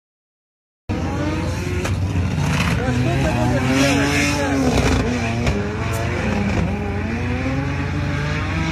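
Silence, then about a second in, drift-car engine noise with tyres squealing and people's voices, running on at a steady loud level.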